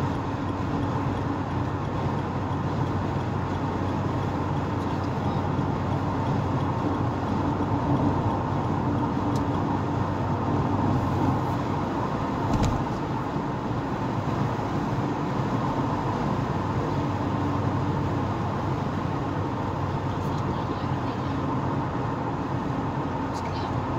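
Car driving at highway speed heard from inside the cabin: a steady drone of engine and tyre noise, with a single short knock about twelve and a half seconds in.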